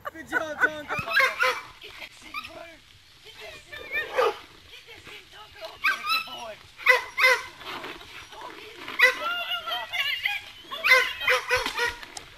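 Dogs barking and yipping in bursts of wavering, pitched calls, several clusters a few seconds apart, as they tussle over a pinata.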